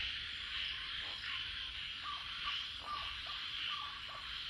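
An owlet calling a few short, clipped notes over a steady chorus of night insects.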